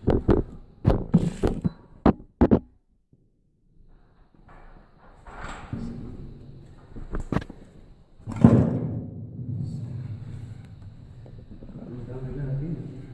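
Hands and boots knocking and clanking on the rungs of a metal ladder as someone climbs a shaft. There is a quick run of knocks at first, two single clicks after a brief gap, then the loudest thud about two-thirds of the way through, followed by a low rumble.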